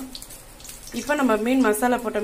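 Hot oil sizzling steadily in a kadai as spices fry. About a second in, a woman's voice starts talking over it.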